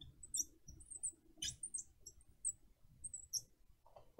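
Marker squeaking on a glass lightboard as small circles are drawn: a string of short, high squeaks at irregular intervals.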